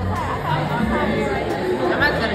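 Indistinct chatter of several people talking in a room.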